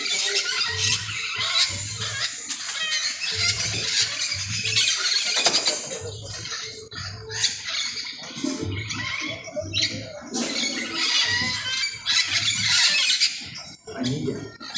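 A flock of parakeets screeching and squawking without a break in a tree, many calls overlapping. Underneath runs a low thumping beat that repeats in pairs about every second and a half.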